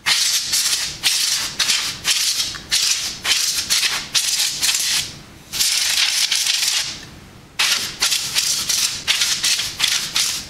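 Canned compressed air hissing in quick, repeated short spurts through its straw into a graphics card's copper heatsink fins, with one longer blast about halfway through. The can is running low on pressure.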